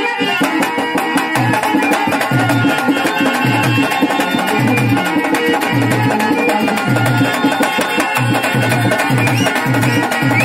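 Live folk stage music: hand drums play a busy, fast rhythm, with deep strokes recurring about once a second, under sustained pitched notes.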